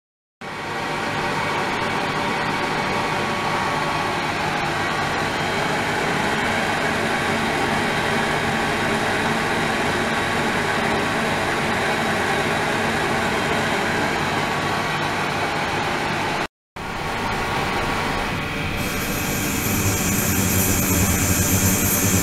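Ultrasonic cleaning tank running, with water churning and a circulation pump motor humming, as a steady dense noise. A brief cut comes partway through. Later a high-pitched whine joins and the sound grows louder.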